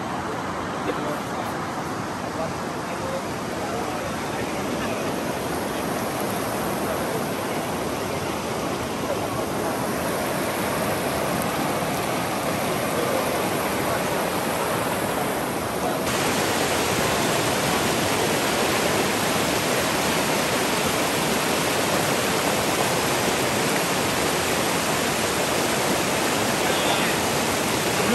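Rushing river water pouring over rocks in shallow rapids, a steady, even rush. About halfway through it grows a little louder and hissier.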